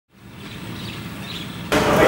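Steady background noise with a faint low hum, fading in, then turning suddenly louder and brighter near the end.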